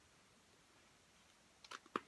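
Near silence, with a few faint clicks near the end from a glue stick and paper cutouts being handled.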